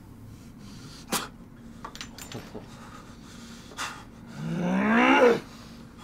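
A sharp click about a second in and a few faint ticks, then a man's drawn-out groan rising in pitch, lasting about a second, near the end.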